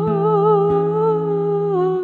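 A woman's voice holding one long sung note with vibrato, dipping slightly near the end, over acoustic guitar.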